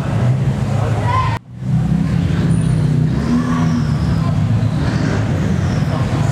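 Car engines running at low revs as cars roll slowly past under a car-park roof, with voices in the background. The whole sound cuts out abruptly for a split second about a second and a half in, then the engine rumble resumes.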